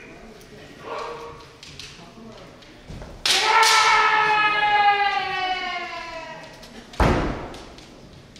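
A kendoka's kiai: short shouts near the start and about a second in, then one long, loud shout about three seconds long that slides slightly down in pitch as it fades. About a second after it ends comes a single sharp impact.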